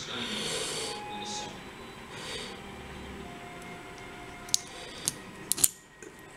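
Metal plug follower pushing a brass lock plug out of its cylinder housing: faint metal-on-metal rubbing and sliding. Several small sharp clicks come in the last second and a half.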